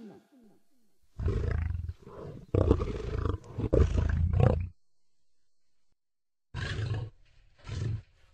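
Deep animal roars in several bursts: a longer run of roars in the first half and two short ones near the end, with silent gaps between them.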